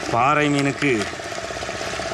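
A man's voice speaks briefly, then gives way to a steady, evenly pulsing mechanical hum like an engine idling in the background.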